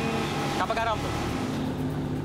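Outboard motors of a patrol speedboat running at speed, a steady engine note under a hiss of wind and water, with a man's voice speaking briefly.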